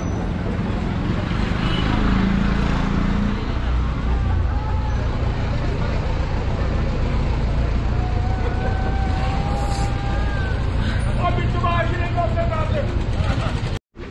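Busy street ambience: a steady rumble of traffic with people's voices in the background, ending in a brief dropout near the end.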